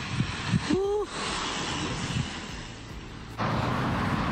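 Steady outdoor road and wind noise on the microphone, with one short rising-then-falling voice call about a second in. Near the end the noise turns suddenly louder and fuller.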